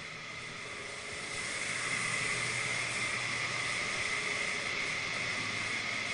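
Steady hiss with an even high whine from machinery running in a spray booth. It gets louder about a second and a half in, then holds steady.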